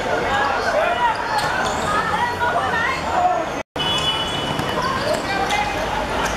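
Several voices of players shouting and calling to one another across a football pitch, mixed with occasional thuds of the ball being kicked. The sound drops out completely for an instant just past halfway.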